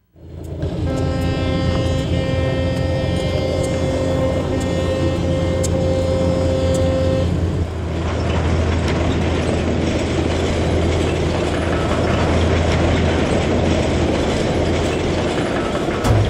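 A train horn holds one steady note for about six seconds. Then the train of sugar-cane rail cars runs past with a steady rolling noise.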